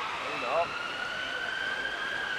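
Ambulance siren wailing: one steady tone that slowly glides up in pitch across the two seconds. A brief voice sound comes in about half a second in.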